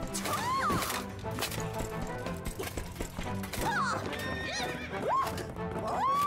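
Cartoon horse sound effects: three short whinnies and clip-clopping hooves, over background music.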